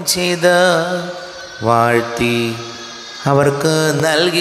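A male priest chanting liturgy solo into a microphone. The sung phrases have long held notes that waver in pitch, and the voice drops softer for a moment about a second in and again just before three seconds.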